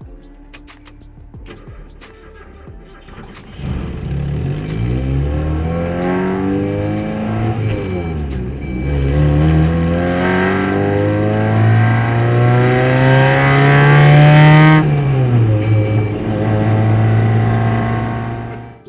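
1989 Mazda Miata's 1.6-litre four-cylinder engine, quiet for the first few seconds, then pulling away hard with the revs rising and dropping several times as it shifts up through the gears without the clutch, the failed clutch hydraulics leaving it unusable. The longest pull ends with a drop in revs about fifteen seconds in, and the engine then runs at a steady speed.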